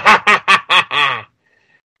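A person laughing loudly in quick, rhythmic "ha" pulses, about six of them, stopping about a second and a quarter in.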